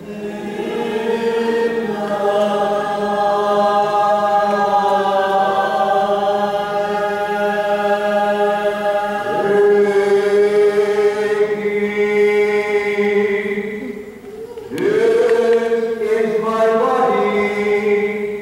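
Church congregation singing a liturgical chant together in long held notes over a steady low note. The singing breaks off briefly about fourteen seconds in, then resumes.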